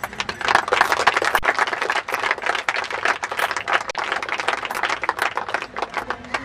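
A small crowd applauding: dense clapping that starts suddenly and thins out near the end.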